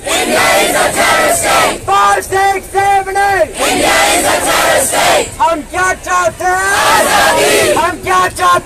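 Protest crowd shouting a chant in rhythm, short shouted syllables coming in quick even runs with brief breaks between them.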